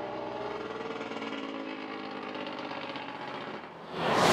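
An engine idling steadily, a low hum with a fast, even pulse running through it.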